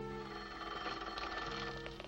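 Telephone bell ringing, a fast rattling ring that starts a moment in, over held notes of background film music.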